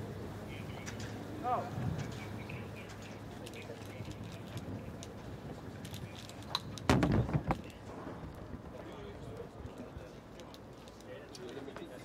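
Open-air ground ambience with indistinct voices talking and a bird calling briefly early on. A short, louder noise bursts in about seven seconds in.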